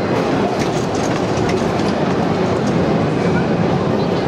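A San Francisco cable car being turned on the Powell Street turntable, a steady loud rumble of its wheels and the turntable with scattered metallic clicks.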